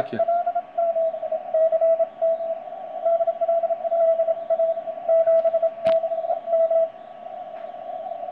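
Morse code (CW) from the C5DL DXpedition station received on a Yaesu FT-991 on the 15 m band: a single keyed tone of middling pitch sending dots and dashes over band hiss, heard through the radio's narrow 150 Hz CW filter with digital noise reduction on. A sharp click about six seconds in.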